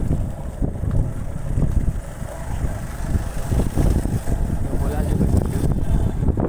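Wind buffeting the microphone of a moving vehicle, a loud uneven low rumble with road noise underneath.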